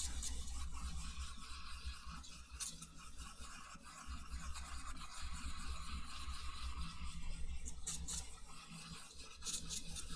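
Fan brush bristles scrubbing and swishing across a wet oil-painted canvas in repeated blending strokes, with a few sharper, scratchier strokes near the end.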